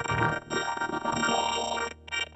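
Audio warped by the 4ormulator V1 effect: a dense, buzzing, synthesizer-like mass of steady tones, with a brief dip a little under half a second in and a drop near the end.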